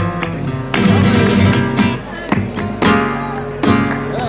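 Flamenco guitar playing por bulerías: rhythmic strummed chords with sharp percussive accents, the loudest strokes about once a second.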